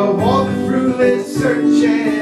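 A man singing while strumming an acoustic guitar.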